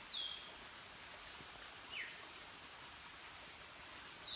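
A bird calling: a short note sliding down in pitch just after the start and a sharper downward-sliding call about two seconds later, over a steady background hiss.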